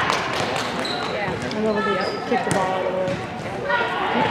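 Gym din of overlapping voices from players and spectators, with a few sharp knocks of volleyballs bouncing on the hard court floor.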